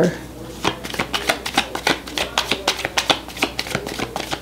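A deck of tarot cards being shuffled by hand: a quick, irregular run of soft card flicks and clicks.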